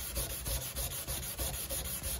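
Sandpaper rubbed by hand over glazing putty on the fiberglass underside of a 1976 Corvette hood: wet sanding in quick, even back-and-forth strokes.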